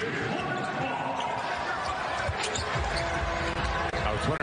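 Arena crowd noise on an NBA game broadcast, with a basketball being dribbled on the hardwood court; the low end of the crowd noise grows heavier about three seconds in.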